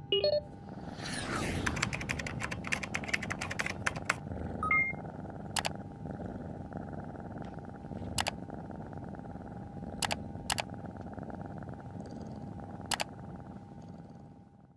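A cat purring steadily under a thin electronic hum. Over it come rapid computer-key clicking in the first few seconds, then a short two-note beep and five single clicks spaced a second or two apart, as the computer's solitaire game is played.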